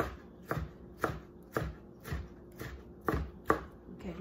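Kitchen knife chopping on a plastic cutting board in a steady rhythm of about two strokes a second.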